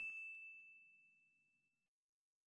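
The dying ring of a chime-like "ding" sound effect: one high, steady tone fading away within about the first second.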